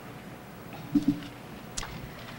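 Quiet room tone with a brief low murmur from a person's voice about a second in, two short hummed sounds, and a faint click or consonant just before the end.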